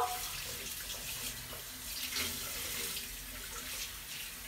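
Bathroom tap running steadily into the sink basin while someone rinses their mouth after brushing their teeth.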